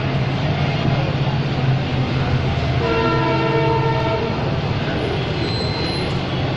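A horn sounds once for about a second and a half, about three seconds in, over a steady low engine rumble.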